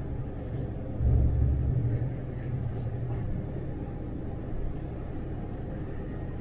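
Low, steady rumble of a MAN Lion's City articulated city bus driving at about 70 km/h, heard from the driver's cab, swelling for a moment about a second in. A single brief high tick comes near the middle.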